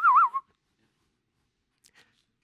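A man whistling a short wavering note that dips and rises twice and stops about half a second in.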